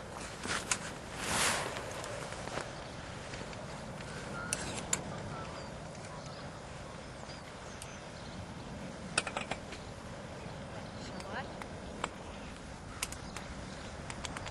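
Scattered light clicks and knocks from the pilot settling into the seat of an electric microlight trike's metal frame, over a steady outdoor hiss; the electric motor is not running. A small cluster of clicks comes about two-thirds of the way through.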